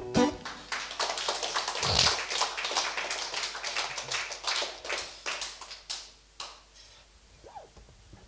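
Small audience clapping, thinning out and stopping about six and a half seconds in.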